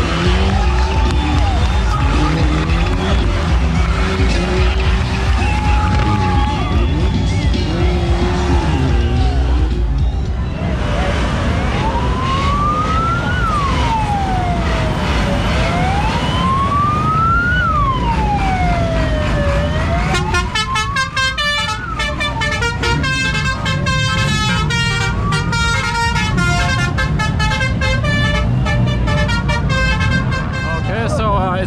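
A drifting car's engine revving hard as it spins. After a cut comes a siren-style wail from the decorated party bus that sweeps up and down twice, followed by loud music with a fast beat.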